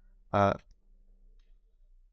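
A man's single short hesitation sound, "uh", then quiet with a faint steady low hum.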